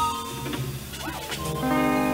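Live band playing with electric guitar, bass, drums and keyboard. A new sustained chord swells in about one and a half seconds in.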